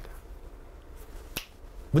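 A single short, sharp click about one and a half seconds in, over quiet room tone.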